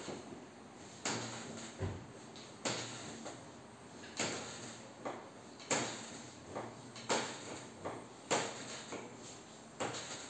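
Hands pressing and rubbing on a person's back through clothing during a manual back treatment: a regular series of short swishing strokes, a strong one about every second and a half with lighter ones in between.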